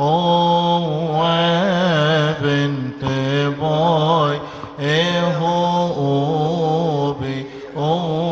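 Coptic Orthodox liturgical chant sung by male deacons' voices through microphones. The melody is drawn out and ornamented, wavering on long held notes, with short breaks for breath.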